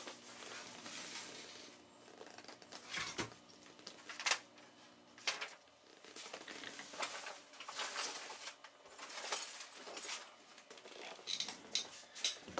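Faint rustling with scattered clicks and knocks of things being handled while someone rummages for a power cable, the loudest knocks about three, four and five seconds in.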